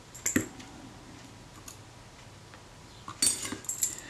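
Small metallic clicks and clinks of a small screwdriver and a tiny screw on a camera body's metal top: one sharp click just after the start, then a quick cluster of clinks near the end.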